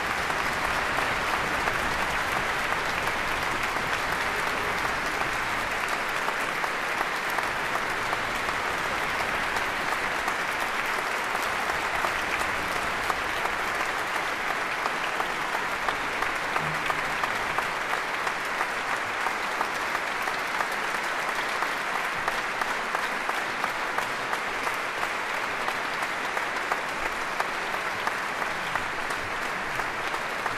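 A large concert-hall audience applauding, dense steady clapping that holds at an even level throughout.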